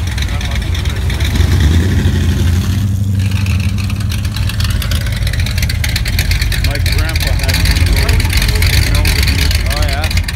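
Old cars' engines rumbling at low speed as they drive slowly past: a mid-1960s Plymouth hardtop pulling away, then an old Ford pickup rolling by. The rumble swells about a second and a half in and again near the end.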